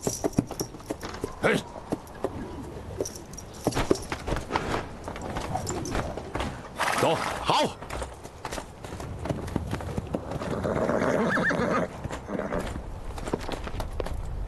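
Horses' hooves clopping and stamping as a mounted troop dismounts, with a horse neighing.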